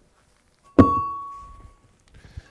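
An 82-pound solid metal cylinder set down onto a towel on carpet: one sharp thunk just under a second in, then a clear metallic ringing tone that fades away over about a second.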